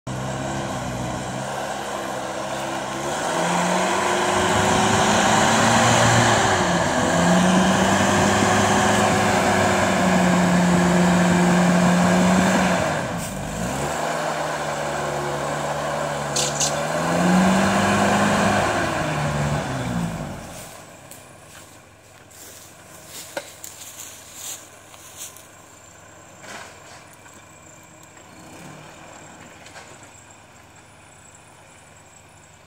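Toyota pickup crawler's engine revving hard under load on a steep climb, its pitch rising and falling as the throttle is worked, with a short dip partway through. About two-thirds of the way in the engine sound drops away, leaving scattered clicks and snaps.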